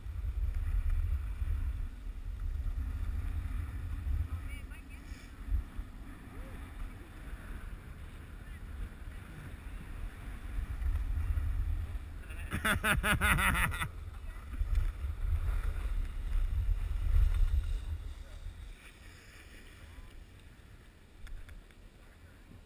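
Wind buffeting the camera's microphone as a skier moves downhill, over a hiss of skis on snow. A laugh comes about 13 seconds in, and the rush dies down near the end as the skier slows.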